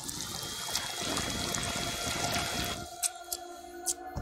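Cartoon soundtrack: a steady, water-like rushing noise for nearly three seconds, then a quieter held musical tone with a few sharp clicks near the end.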